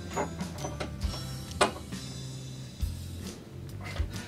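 Background music, with a few light clicks and knocks from cam locks being turned to lock the flat-pack panels together.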